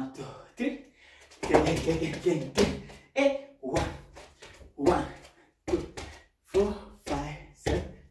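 A man's voice in short rhythmic bursts, vocalising dance-rhythm syllables rather than words, with low thuds of bare feet stepping on a wooden floor.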